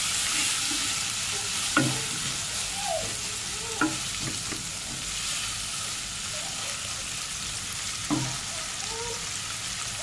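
Sliced onions sizzling in hot oil in a nonstick pot as they fry toward brown, stirred with a wooden spoon. The spoon knocks sharply against the pot three times, about two, four and eight seconds in.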